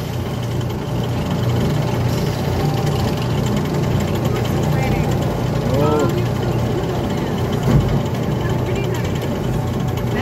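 Steady low hum of a Bradley & Kaye antique-style ride car running along its guide track. A brief voice cuts in near the middle, and there is a single thump about three-quarters of the way through.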